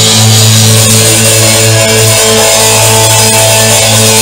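Punk rock band playing live and loud: sustained electric guitar chords over bass and drums, with no vocal line.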